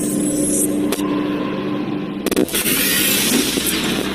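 Sound effects for an animated channel-logo intro: a steady low drone under loud rushing noise, with a quick run of sharp clicks a little past two seconds in, after which the noise swells brighter.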